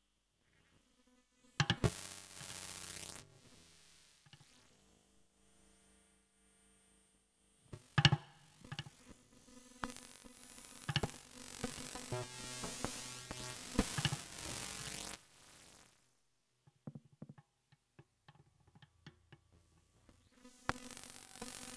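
Improvised experimental electronic music built from processed guitar and snare sounds: sharp struck hits, each followed by a wash of dense noise and tones, with a sparser, quieter stretch between about 3 and 8 seconds in. The noise cuts off suddenly about 15 seconds in, leaving a few scattered clicks.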